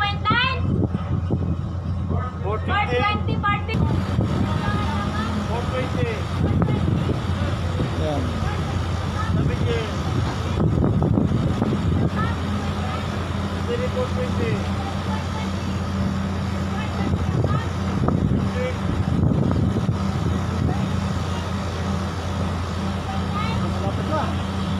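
A ferry's engines running with a steady low hum under way, with voices talking in the background.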